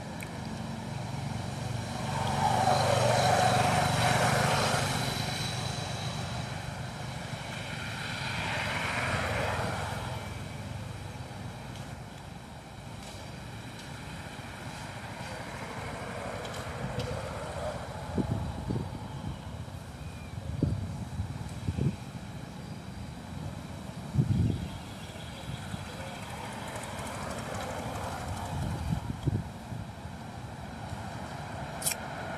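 Engine noise of a passing motor vehicle, swelling and fading twice in the first ten seconds over a steady low outdoor hum. Later come a few short, dull knocks.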